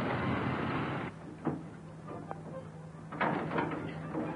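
A 1930s panel van's engine running as it pulls away, cut off suddenly about a second in. Then a steady low hum with a few sharp knocks and rattles, the loudest cluster near the end.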